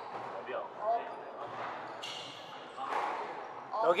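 A squash ball being struck and rebounding off the court walls and floor during a rally, with one louder hit about a second in, over faint low voices.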